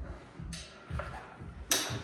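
Faint handling of a dirt-bike tyre and spoked wheel by gloved hands, with a couple of small clicks, then a sudden louder noise near the end.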